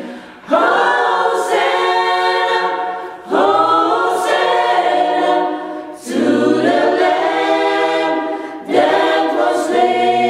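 Small choir singing a cappella, holding chords in phrases about three seconds long with a short break for breath between each.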